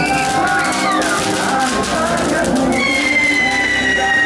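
A ground firework fountain spraying sparks, with a dense crackle in the first half and a long high whistle, falling slightly in pitch, near the end, over music.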